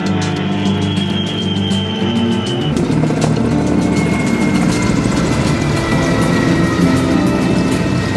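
Background music throughout, joined about three seconds in by the steady running of a helicopter in flight, heard under the music.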